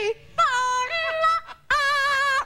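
Yellow-naped Amazon parrot singing: a few high, wavering sung notes in short phrases with brief breaks, ending on a held steady note.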